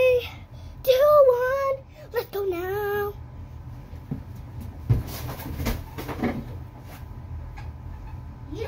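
A child's drawn-out, sung cry for the first few seconds, then the scuffs, rustles and thumps of a child running and landing on foam gym mats, the sharpest thump about five seconds in.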